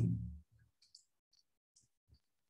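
A few faint, irregular clicks and taps of a stylus on a pen tablet as handwriting is written.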